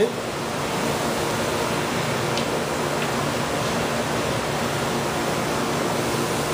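Steady rushing background noise of equipment-room machinery and ventilation, with a couple of faint ticks a little over two and three seconds in from handling a small plastic reagent bottle.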